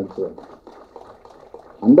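A man speaking Tamil into a microphone breaks off for about a second and a half, leaving only faint crackle and room sound, then starts his next word just before the end.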